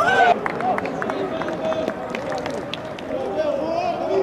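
Footballers' shouts and calls echoing around an empty stadium, opening with a loud cry as a goal is celebrated. There are a few short knocks among the voices.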